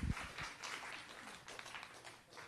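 Audience applauding: many people clapping at once, thinning out near the end.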